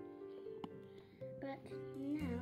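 Background music with plucked-string notes, played quietly.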